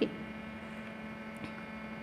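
Steady electrical mains hum with faint hiss, running evenly.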